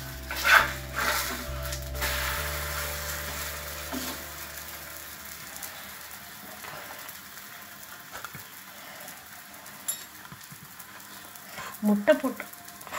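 Egg dosa frying in oil on a cast-iron tawa: a metal spatula scrapes and the dosa is flipped about half a second in, then a steady sizzle that slowly quietens.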